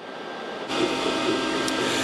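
Steady mechanical noise of dairy milking-parlor machinery, the milking equipment and its motors running with a mix of steady hums. It fades up and settles at a steady level about two-thirds of a second in.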